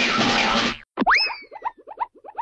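Cartoon sound effects: a noisy burst with a wavering tone for the first second. It is followed, about a second in, by a springy boing that swoops up and slides down, then a fast run of short chirps, about six a second.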